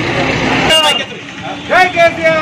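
Street noise, then a man's loud shout rising about three-quarters of the way through, part of a crowd of men shouting and cheering.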